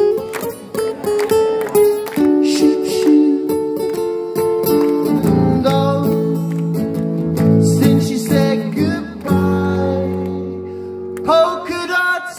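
Acoustic guitar strummed, ringing out chords in an instrumental passage, with a change of chord near the end.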